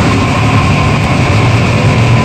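Live extreme-metal band playing at full volume: a dense, distorted low wall of sound from electric guitar, drums and amplification, with a thin steady high tone above it.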